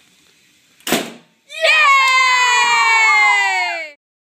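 A balloon pops with a single sharp bang about a second in. Then comes a child's long, high-pitched shriek, held for over two seconds and sliding slowly down in pitch.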